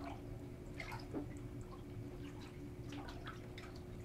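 A hand stirring water in a glass aquarium: faint small splashes and drips as sea salt is mixed in to dissolve.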